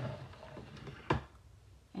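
Soft handling rustle, then a single sharp tap about a second in.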